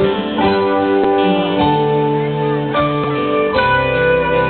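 Live rock band playing an instrumental passage with no singing, guitars to the fore, the notes shifting and sliding in pitch over a steady bass and drums.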